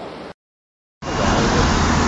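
A faint hiss stops dead, then after a short gap of silence, steady road and engine noise from inside a moving car comes in about a second in, with a strong low rumble.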